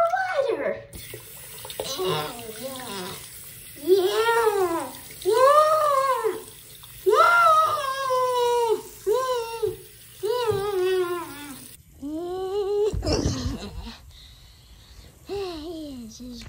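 A tap running into a sink, water swirling as a small plush toy is swished in it, with a high-pitched voice making wordless sing-song notes that each rise and fall. The running water stops suddenly about twelve seconds in, followed by a brief low rumble.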